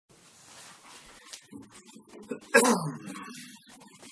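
Faint rustling and handling noises, then about two and a half seconds in a single short vocal sound that falls in pitch and is the loudest thing heard.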